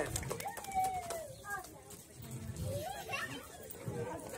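Faint voices of adults and children talking, with a few small clicks.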